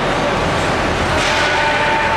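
Steady din of an ice rink during a hockey game, with a held ringing tone coming in about a second and a quarter in.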